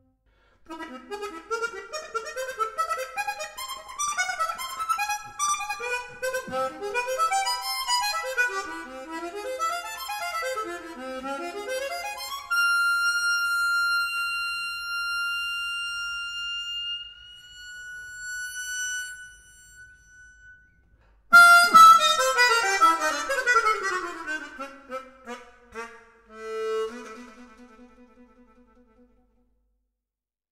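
Solo harmonica in a classical concerto movement, playing quick runs of notes. It then holds one long high note that slowly fades. After a short break it comes back loudly with rapid falling runs that settle on a low note.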